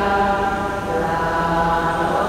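Slow liturgical singing in a church, with long held notes that change pitch only now and then.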